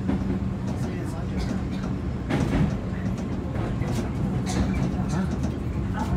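Electric commuter train running along the track, heard from inside the front car: a steady low hum with wheel rumble and a few short clicks as the wheels pass over the rails.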